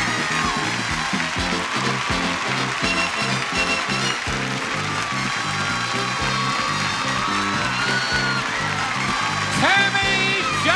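Upbeat game-show theme music with a steady beat, played over a studio audience clapping and cheering.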